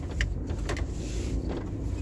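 Car cabin noise: a steady low engine and road rumble, with a few faint ticks.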